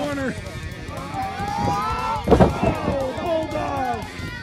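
A wrestler's body slams onto the backyard wrestling ring mat with a single heavy thud about two and a half seconds in, amid shouting voices and background music.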